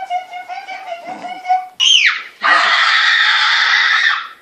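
A young woman's long held yell, wavering in pitch. About two seconds in it breaks into a short high cry that falls in pitch, then a loud, harsh scream for the last second and a half.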